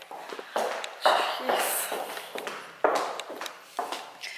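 Footsteps and rustling of clothing against the microphone, with a few sharp knocks.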